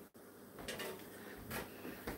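Faint clicks and rattles of an air fryer basket being pulled out of the air fryer like a drawer and handled, in two short sounds about a second apart.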